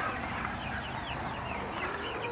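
Free-range laying hens clucking, a flock of short, quick calls overlapping one another.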